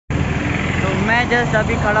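Steady road traffic noise from vehicles passing on a bridge, with a man starting to speak about a second in.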